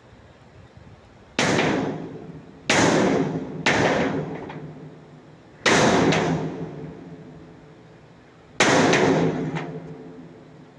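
Hammer blows on a large steel hydropower pipe: five sharp strikes at uneven intervals, each leaving the pipe ringing for a second or more.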